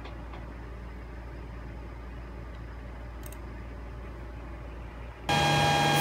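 Steady low electrical hum from the mining setup. About five seconds in, it jumps suddenly to a much louder steady whine with several held tones: the Antminer Z9 Mini miner and its off-grid inverter running.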